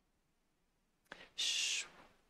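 A brief hushed 'sh' hiss from a woman's voice at a microphone, lasting about half a second and coming after a second of near silence.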